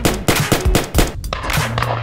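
Rapid gunshot sound effects from a toy blaster, a quick series of sharp shots at about four a second, over background music.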